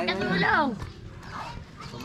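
A dog barking once near the start: a single call under a second long whose pitch rises and then falls.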